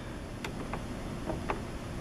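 A few faint clicks, three or four, as the LCD contrast dial of a 1985 Smith Corona SD 300 electronic typewriter is turned, over a low steady hum.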